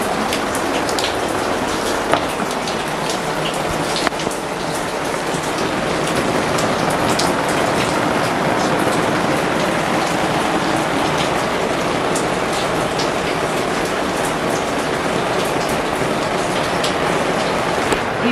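Steady rain falling on a wet tiled terrace floor: a constant hiss with many individual drops splashing and ticking.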